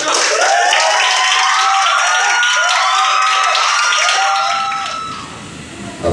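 A crowd applauding and cheering, with many voices calling out over the clapping. It dies away about five seconds in.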